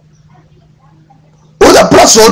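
A pause with only a faint steady low hum, then a man's loud, raised voice breaks in about a second and a half in.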